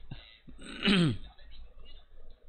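A man's voice making one short sound that falls in pitch, about a second in.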